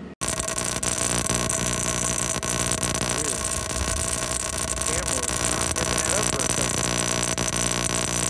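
High-voltage ignition spark arcing across a waste-oil radiant tube burner's electrodes: a loud, steady electrical buzz and crackle, mixed with a steady hum, starting abruptly just after the beginning.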